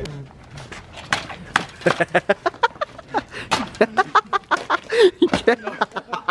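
Several young men's voices laughing and chattering in short bursts, several a second, with short sharp clicks among them.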